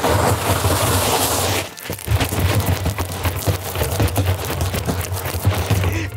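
Ice cubes poured from a bag into a giant hollow four-foot Stanley tumbler, clattering and rattling as they fall in: a loud rush in the first second and a half, a brief lull, then continuous rattling of cubes tumbling in.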